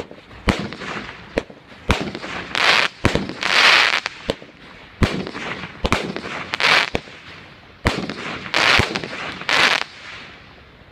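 A 16-shot consumer firework cake firing: about a dozen sharp bangs from launches and bursts, irregularly spaced roughly a second or less apart, with short rushes of crackle from the breaking stars between them. The volley stops at the very end.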